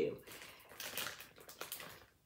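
Clear plastic bag crinkling and crackling as it is handled and pulled open, a quick run of small rustles and clicks.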